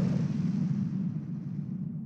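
Tail of a deep cinematic boom sound effect: a low rumble slowly fading away.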